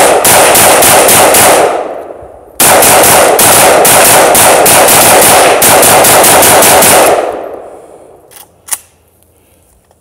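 AK-pattern rifle fired in rapid strings of shots, about five a second, each shot echoing. A burst ends a couple of seconds in, and after a short pause a longer string runs until the firing stops about seven seconds in, the magazine apparently empty.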